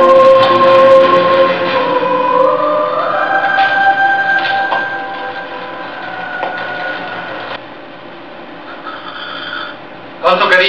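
Soundtrack music with choir voices holding long chords, stepping up in pitch about two and a half seconds in, then fading away about seven and a half seconds in.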